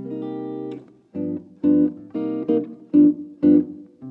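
Sadowsky electric guitar playing a G7 chord, held for nearly a second, then about six short chord stabs.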